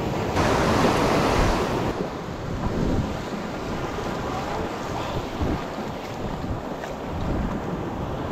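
Ocean surf breaking and washing up the beach, with wind buffeting the microphone. A louder rush of breaking water fills the first couple of seconds, then the wash settles to a steadier hiss.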